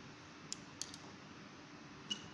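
Two light clicks, about a third of a second apart, from the pointer and the plastic cutaway engine model being handled, over a faint steady hum.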